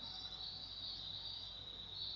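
Steady high-pitched background whine over a faint low hum, unchanging throughout.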